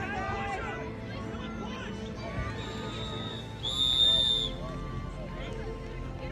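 A referee's whistle blows one steady high blast of about a second, a little past halfway through, after a fainter lead-in. Scattered voices of players and spectators carry on underneath.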